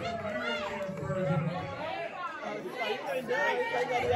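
Many people talking and calling out over one another in a large, echoing room.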